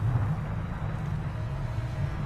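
A steady deep rumble of soundtrack sound design, a low roar standing for a wall of hot gas sweeping through the solar system.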